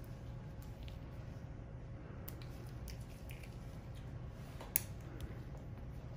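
Light metallic clicks and snips from surgical instruments as interrupted stitches are placed, over a steady low room hum. The clicks are scattered, with one sharper click near the end.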